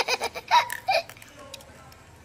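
A young boy giggling: a few short bursts of laughter in the first second, then it dies down.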